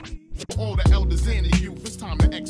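Hip hop track: rapping over a beat with sharp drum hits and a long, deep bass note.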